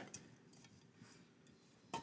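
Near silence: faint room tone with a couple of faint light clicks, one near the start and one near the end.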